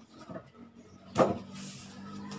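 Cardboard box and its packing being rummaged through by hand, with a sharp, loud crackling knock about a second in. A steady low hum then starts and keeps going.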